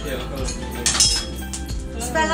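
Light metallic clinks from aluminium truss tubing and fittings being handled during assembly; the loudest is a short, ringing clink about a second in. Background music runs underneath.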